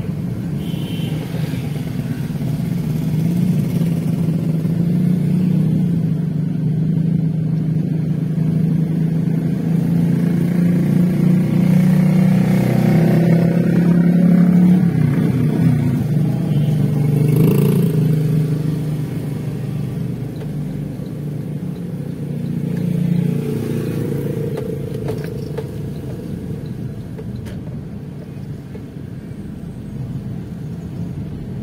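Engine and road noise of a vehicle driving through town traffic. The engine note builds to its loudest about halfway through, then eases off.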